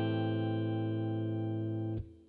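Electric guitar ringing out an A minor 7 chord, the open A minor shape with a high G added on the high E string, fading slowly and then muted sharply at the end.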